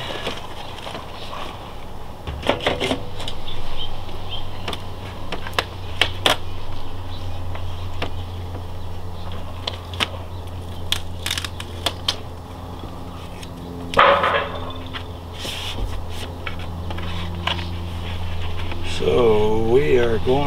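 Crinkling and sharp clicks of a vinyl decal and its paper backing being handled and peeled, over a steady low hum. A brief hissy burst comes about two and a half seconds in and a stronger one about fourteen seconds in.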